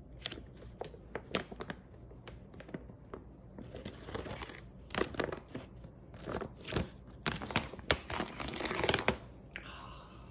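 Chain-stitched top seam of a plastic rice bag being unravelled by pulling its thread: a run of quick crackling ticks and short rips, with the bag's plastic crinkling, loudest in the second half and ending in a longer rip just before the seam comes open.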